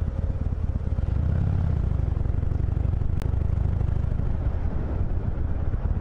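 Harley-Davidson Iron 883's air-cooled V-twin engine running while riding, heard through a helmet-mounted microphone with a heavy low rumble of wind. A single sharp click comes about three seconds in.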